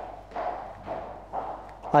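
Faint footsteps of a woman's high-heeled shoes on a hard floor, approaching.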